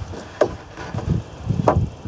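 Wooden planks knocking and thudding as they are handled, with two sharp knocks, one about half a second in and one near the end.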